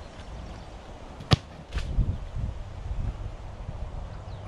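A football struck once with a sharp thump as a footgolfer kicks it off the tee after a short run-up, followed by a low rumble.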